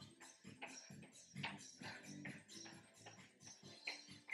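Near silence: faint background music with a regular ticking beat, about three soft ticks a second.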